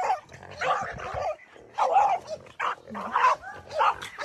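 French bulldog barking and yipping repeatedly at a hog, about six short barks spaced half a second to a second apart.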